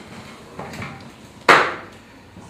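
A single sharp knock about one and a half seconds in, dying away quickly, over faint room murmur.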